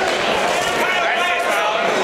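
Spectators in a large hall talking and calling out at once, a steady din of many overlapping voices with no single voice standing out.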